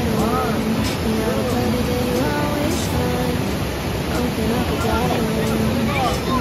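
Steady rush of whitewater river rapids running high and fast, with voices and background music over it.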